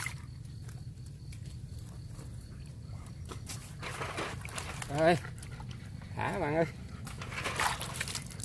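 A dog whining: two short high, wavering whines, about five seconds in and again a second later, over a low steady hum.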